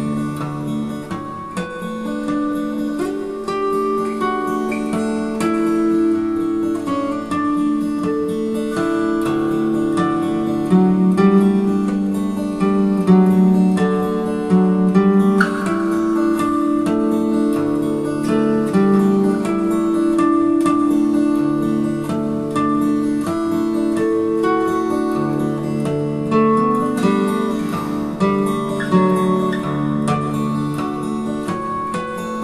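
Steel-string acoustic guitar played fingerstyle: a picked melody of single notes over a moving bass line.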